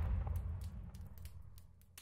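The dying tail of an explosion sound effect: a low rumble with faint scattered crackles, fading away to nothing near the end.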